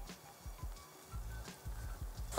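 Quiet background music, with soft, irregular dull thumps of hands mixing flour and yeast liquid into a shaggy dough in a glass bowl.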